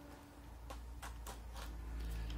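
Faint, scattered light plastic clicks as the swappable hand of an S.H.Figuarts action figure is handled and changed at the wrist, over a low hum.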